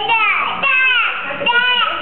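A small child's high-pitched voice: three short calls, each about half a second long.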